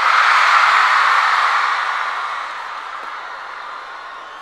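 Large concert crowd cheering, loudest at the start and dying down over a few seconds.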